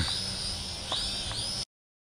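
Small toy quadcopter's propellers giving a thin, high-pitched whine that bends up and down in pitch as the motors correct against gusts, over low wind rumble on the microphone. The sound cuts off abruptly to silence near the end.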